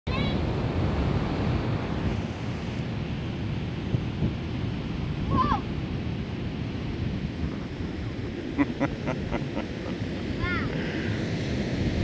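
Steady rushing noise of ocean surf, with wind on the microphone. A short high voice-like call cuts through a few times.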